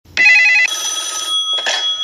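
Electronic telephone-style ring warbling rapidly between two pitches for about half a second, then a steady electronic tone over hiss for under a second, and a brief rush of noise near the end.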